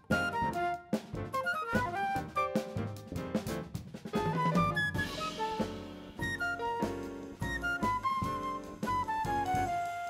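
Live jazz band playing: drum kit with cymbals and bass drum keeping time under piano and upright bass. In the last couple of seconds a flute carries held notes that step downward.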